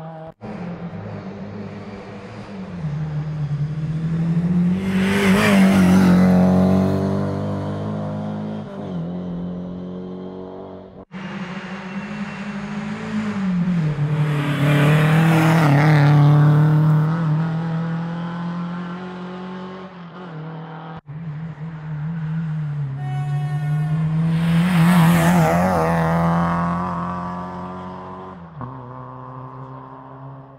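Three rally cars passing one after another at racing speed on a stage, one of them a classic Lada saloon, each engine note swelling to a peak as the car goes by and falling away. Abrupt cuts separate the passes.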